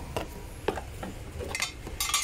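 Light handling noise: a few faint clicks and knocks of hard plastic parts being moved about in a cardboard box.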